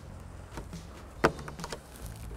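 A few small clicks of a metal pick tip working at the plastic cover on a sun visor's ceiling mount, with one sharper click about a second in.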